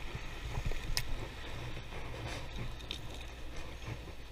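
Sea washing over the rock ledge below, a steady wash with a constant low rumble, broken by a few faint clicks.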